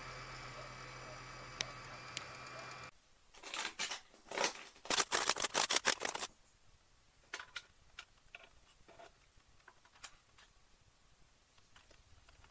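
Creality Ender 3 Pro 3D printer running with a steady whine and hum, which cuts off about three seconds in. Then comes a quick run of loud clicks and scrapes as 3D-printed plastic case parts are handled and fitted together, thinning to scattered light clicks.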